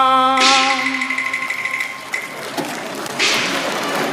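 A male Cantonese opera singer's held final note, with vibrato, ends about half a second in and is followed by audience applause. The applause grows louder again a little after three seconds in.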